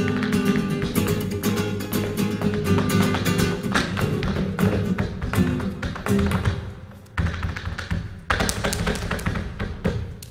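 Flamenco guitar playing a bulería, with the dancer's heel-and-toe footwork (zapateado) striking the stage floor in quick, sharp beats. After about seven seconds the guitar thins out and the footwork strikes stand out alone.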